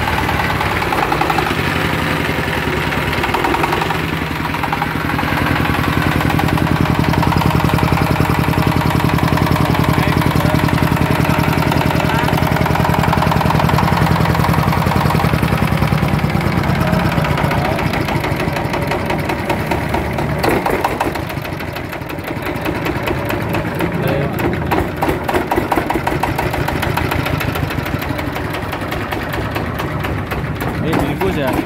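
Dongfeng S1115 single-cylinder diesel engine running steadily just after a hand-crank start, a loud even diesel clatter. About two-thirds of the way through there is a sharp knock, after which the engine runs slower with its separate firing beats easy to hear.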